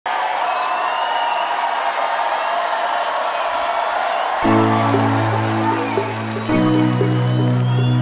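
A large crowd cheering, then about four seconds in sustained low chords of a song intro come in under the cheering and change chord about two seconds later.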